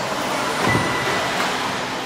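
4WD off-road RC cars racing on an indoor dirt track: a steady, noisy hum of motors and tyres in a large hall, with a brief thin whine just under a second in.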